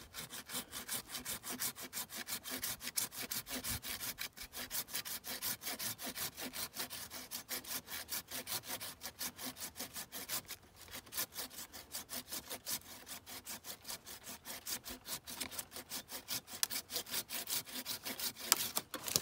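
Hand pruning saw cutting through a live peach tree branch with steady, rapid back-and-forth strokes, with a brief pause a little past the middle. This is the cut that takes off the rest of the branch after an undercut, made so the bark won't tear.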